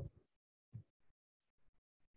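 Near silence, with a faint short sound about three quarters of a second in.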